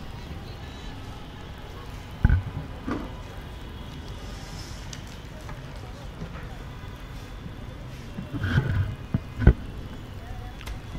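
Steady low hum of an open commentary-box microphone, broken by a few bumps and knocks of handling as the commentators change over. The loudest bump comes about two seconds in, and a cluster of knocks comes near the end.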